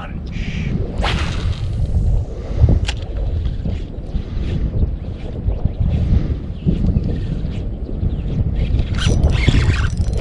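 Wind buffeting the microphone in a steady low rumble, with a quick swish about a second in and a few sharp clicks.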